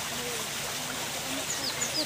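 Steady rush of running water at a canal lock, with a bird giving a few short, falling high chirps near the end.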